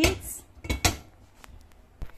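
Cooking pot set down on a gas stove's burner: a knock at the start, then two sharp clanks close together a little under a second in, followed by a few faint ticks.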